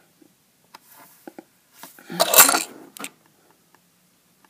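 Handling noise: a few faint light clicks, then a short rustling scrape a little past the middle.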